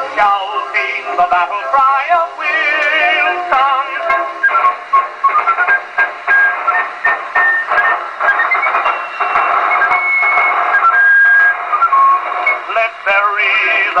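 1911 Columbia Grafonola Nonpareil acoustic phonograph playing an old 78 rpm record: a band break between vocal choruses, a melody of held, stepping notes, with the narrow, boxy tone of an early acoustic recording. The singer comes back in right at the end.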